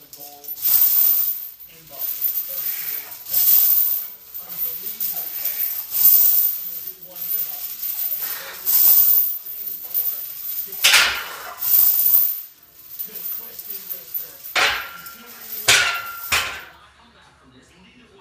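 Steel chains hanging from a loaded barbell clinking and rattling in repeated bursts every second or two as the bar is pressed and lowered on a bench press, stopping abruptly near the end.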